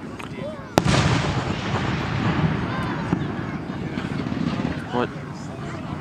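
An aerial firework shell bursting: one loud, sharp boom under a second in, followed by a rumbling echo that dies away over the next few seconds. Fainter pops follow later.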